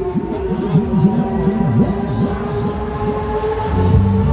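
Music and sound effects from a fairground ride's loudspeakers: a held, horn-like chord over a fast-repeating low swooping sound. The stepped bass beat comes back in right at the end.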